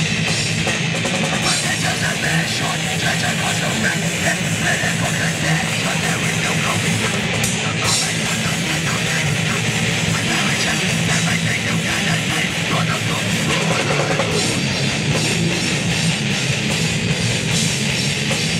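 A live deathcore band playing: distorted electric guitars, bass guitar and a drum kit, loud and unbroken.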